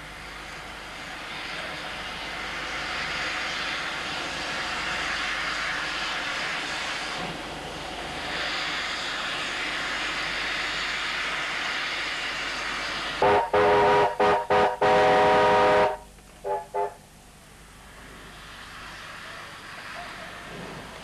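Steam locomotive hissing steam, then its whistle sounding loudly about two-thirds of the way in: four short toots running into a longer blast, followed by two quick toots.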